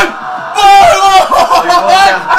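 A man yelling at the top of his voice in celebration of a goal. After a short burst at the start, a long drawn-out shout begins about half a second in.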